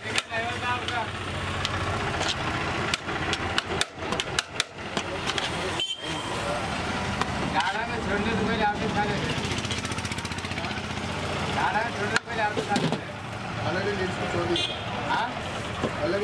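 Voices talking over a steady low hum of street traffic, with a few sharp knocks and clicks in the first few seconds.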